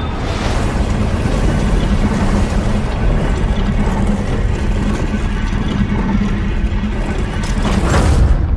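Sound effect of a heavy ornate door sliding open: a steady rumble with a low hum underneath.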